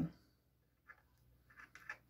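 Knitting needles and yarn handled close up, heard faintly: a single soft tick about a second in, then three quick soft clicks near the end, as stitches are slipped one by one onto a spare needle.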